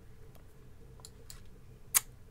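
Computer mouse clicks: a few faint clicks, then one sharper, louder click near the end, over a faint steady hum.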